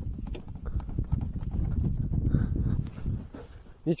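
Steel push-module frame and plastic sled of a motorised towing unit knocking and rattling irregularly as a man rocks and presses down on them with his weight, testing the frame's strength; it holds without breaking.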